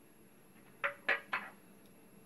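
Three quick, short vocal sounds about a quarter second apart, a little under a second in; they are the loudest thing heard.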